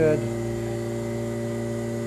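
Steady electrical-mechanical hum made of several fixed tones, from a running particulate filtration efficiency (PFE) mask-testing machine.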